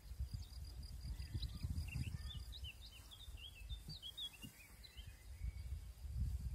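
A songbird singing a quick run of short chirping notes from about a second in until near the end, over a low rumbling outdoor noise.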